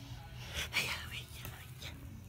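Faint whispered, breathy voice sounds with a couple of soft clicks, without any pitched voice.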